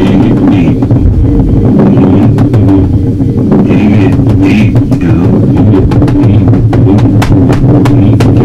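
Improvised noise music: a loud, dense low drone with frequent sharp crackling clicks running through it.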